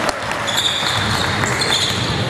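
Basketball play on a hardwood gym court: sneakers squeaking in short high squeals from about half a second in, with the ball bouncing.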